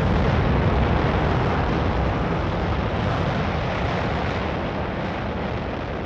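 A dense, rumbling noise wash with no tune in it, slowly fading out: the reverb-drenched closing noise effect of a slowed-down electropop track.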